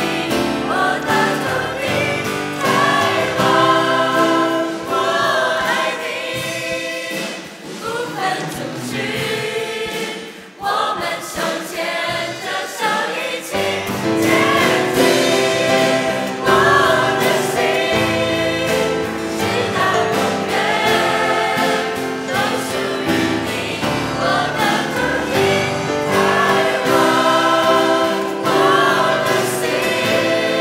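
Mixed choir of young men and women singing a Mandarin song. The singing thins and dips briefly about ten seconds in, then returns fuller, with a deeper bass underneath.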